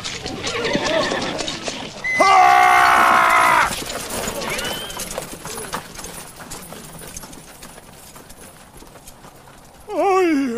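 Horse sounds in a dubbed period-drama battle scene: hooves clattering, then one loud held call about two seconds in that lasts about a second and a half, and a short whinny about two seconds after it, as the hoof noise slowly dies down.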